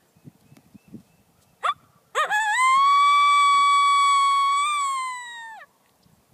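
Hunter's Specialties Triple Dog Pounder coyote howler call blown by mouth, giving a soft, subtle howl imitating a coyote: a brief rising yip, then one long howl that rises, holds steady, and falls off at the end.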